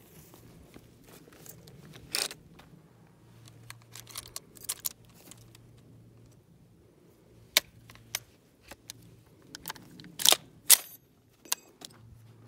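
Metallic clicks, clacks and rattles of a belt-fed AR being loaded by hand, its linked cartridge belt laid into the open feed tray. The two loudest sharp snaps come about half a second apart near the end.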